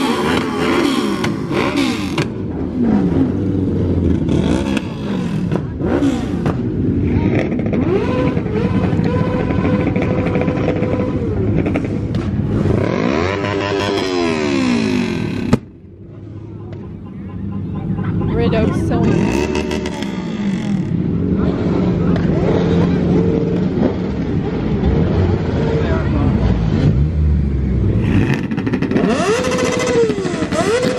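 Several car and motorcycle engines at a car meet revving and running, their pitch repeatedly rising and falling, over a background of crowd voices. About halfway through the sound breaks off sharply, then builds up again as engines run close by.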